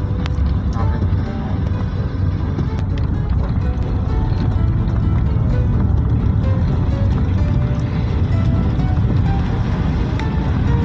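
Steady low rumble of a moving vehicle's road and engine noise heard from inside the cabin, with faint music over it.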